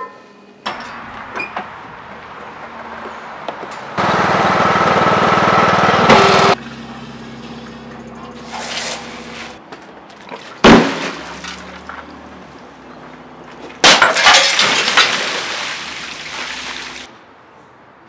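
Water-filled glass fish tank smashed with a pole: a crash of breaking glass and water gushing and splashing out, lasting about three seconds near the end. Before it come a loud steady noise lasting about two and a half seconds and a single sharp bang.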